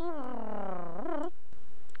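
A man's voice making a vocal sound effect: one drawn-out tone that falls in pitch for about a second and turns up briefly at the end.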